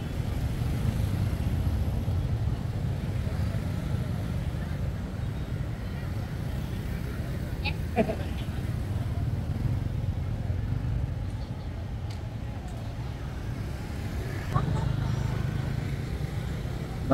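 Steady low rumble of street traffic passing by, with a short laugh about eight seconds in.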